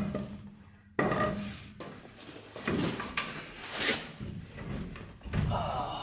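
Driveshaft slip yoke being pushed and wiggled onto the transmission output shaft: a string of irregular metal clunks and scrapes as it binds and is worked on, with a sharp knock about a second in.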